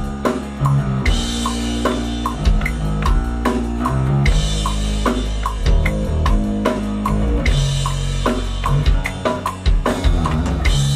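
Four-string electric bass playing a groove of sustained low notes along with a drum kit track. A metronome click marks the beat about twice a second.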